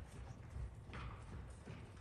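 Faint hoofbeats of a small pony trotting on sand arena footing.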